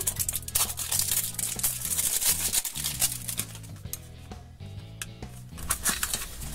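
Crinkling and tearing of toy packaging as a seal is peeled off a boxed toy, busiest in the first three seconds, over soft background music.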